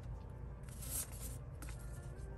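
Paper sticker sheets rustling as they are handled, with a brief louder rustle about half a second in. Faint lo-fi background music plays under it.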